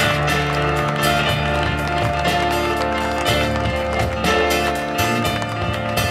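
A live band playing music with a steady drum beat and held bass notes.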